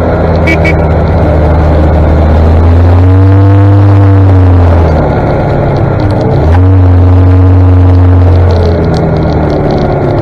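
1959 Daimler Ferret armoured scout car's Rolls-Royce B60 straight-six petrol engine running loudly under way. Its pitch rises and falls with the throttle, dipping and then jumping sharply about six and a half seconds in.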